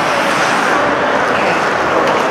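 Steady ambient noise of an indoor ice hockey rink during play: a dense wash of spectator voices and skating on ice, with no single event standing out.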